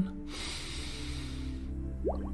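A long in-breath through the nose, lasting about a second and a half, over soft, steady background music.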